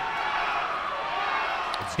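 Swim-meet spectators cheering, a steady even crowd noise without a break.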